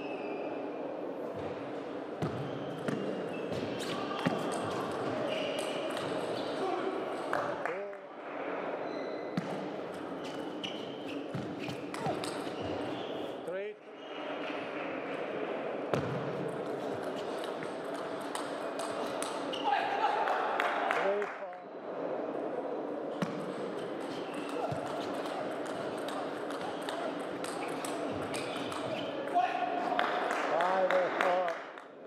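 Plastic table tennis ball clicking off the rackets and the table in quick rallies, echoing in a large hall, over a steady background of voices.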